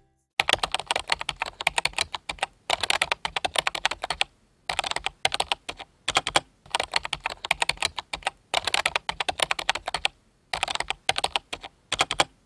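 Computer keyboard typing sound effect: rapid key clicks in about six runs of one to two seconds, with short pauses between runs.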